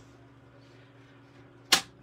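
A single short, sharp swish of cardstock being lifted and handled, about three-quarters of the way in, over a faint steady hum.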